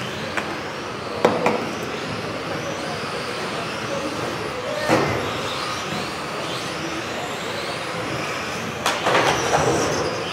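Radio-controlled model racing cars lapping a carpet track, several motors whining with pitch that rises and falls as the cars speed up and brake. A few sharp knocks come through, one near the start, one mid-way and a cluster near the end.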